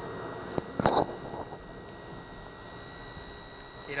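Electric power trim and tilt motor of a 1982 Johnson 90 hp outboard running as it tilts the outboard up: a steady, fairly quiet hum with a faint thin whine. A sharp clack comes about a second in.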